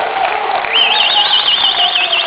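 A high, fast-warbling siren-like tone starts under a second in, over a cheering crowd.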